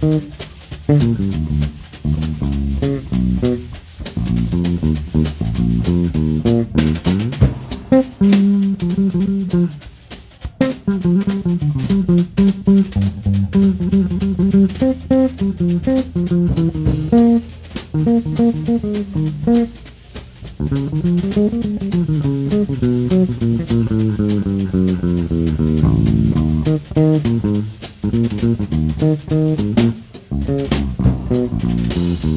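Electric bass guitar playing a moving melodic line over a drum kit, live jazz. About two-thirds of the way through, a bass note slides up and back down.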